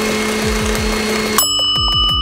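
A stand mixer hums steadily on high speed, beating the dip, then about one and a half seconds in it stops abruptly and a wind-up kitchen timer's bell rings rapidly, marking the end of the mixing time.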